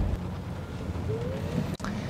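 Steady low road and tyre rumble inside the cabin of a Genesis G80 Electrified driving on a wet road, with a faint rising whine in the second half.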